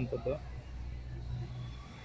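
Low, steady engine hum of a small goods truck driving slowly past.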